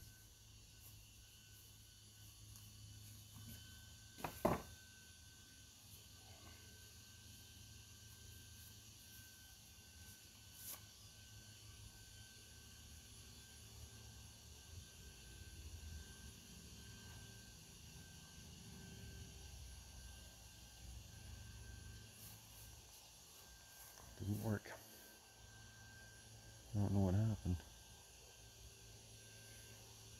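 Wooden beehive parts being handled: one sharp knock about four seconds in over a quiet, steady background. Near the end, two short murmured voice sounds.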